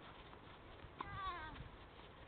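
A tennis ball struck with a racket about a second in, followed at once by a short, wavering cry that falls in pitch over about half a second.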